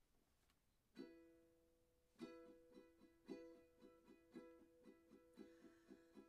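Ukulele played quietly as a song's introduction: a single chord strummed about a second in and left to ring, then steady rhythmic strumming from about two seconds in, around two to three strokes a second.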